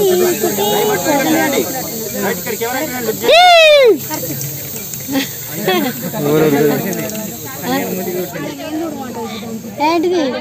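Aerosol party snow-spray cans hissing as they are sprayed, under a crowd's overlapping voices. About three seconds in, one loud high call rises and falls.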